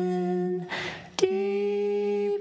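A man and a woman singing a slow worship song, holding a long, steady note. A breath is taken just before the next held note begins, a little over a second in.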